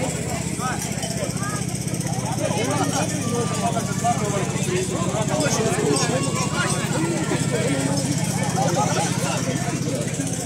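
Several people talking at once, indistinctly, over a small engine running steadily.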